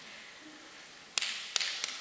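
Three sharp taps about a third of a second apart, starting a little after a second in, the first the loudest and followed by a brief hiss.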